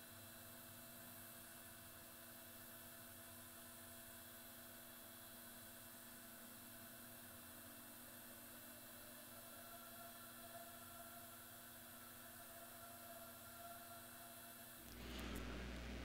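Near silence: a faint steady hum and hiss.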